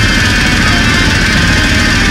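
Heavy metal music in an instrumental passage: electric guitar and drums playing at a steady, full loudness, with no singing.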